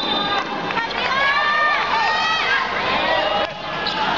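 Volleyball arena crowd shouting and cheering, many overlapping voices rising and falling in pitch. A steady high whistle tone cuts off just after the start.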